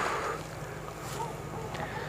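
Steady low drone of a distant tractor engine.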